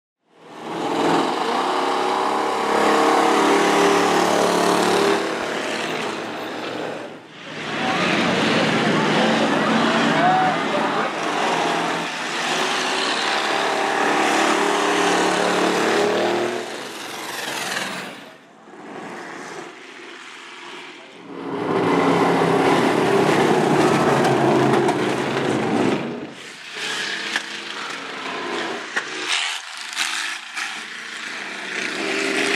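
Demolition derby cars' engines running loud and revving on a dirt track. The loud stretches are broken by quieter spells about two-thirds of the way through and near the end.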